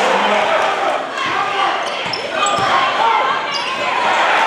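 Live game sound in a gym: a basketball dribbled on the hardwood court amid the crowd's voices and shouts, with a few short high sneaker squeaks in the second half.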